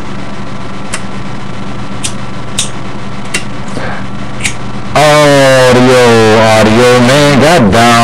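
Radio receiver hiss with a steady hum and a few clicks. About five seconds in, a loud, warbling pitched signal comes in over it.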